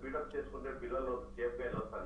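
Speech only: a man talking at a moderate level, with the narrow sound of a telephone line.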